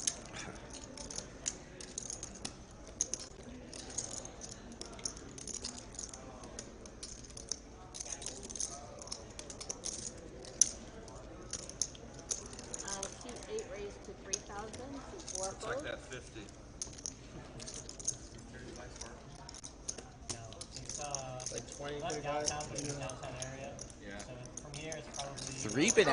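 Poker chips clicking as players at the table riffle and stack them, a scatter of small sharp clicks, over a low murmur of voices in the card room.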